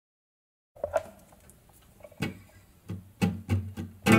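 A few soft knocks and taps on an acoustic guitar, with its strings ringing faintly underneath, starting about a second in and coming closer together near the end.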